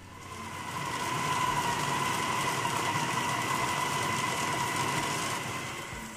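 Electric food chopper's motor running as it grinds raw beef mince with spices, a steady whine that builds up over the first second and eases off near the end.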